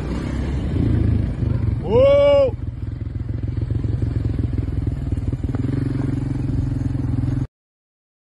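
Small vehicle engine running steadily while driving over rough ground, with a short shout about two seconds in. The sound cuts off suddenly near the end.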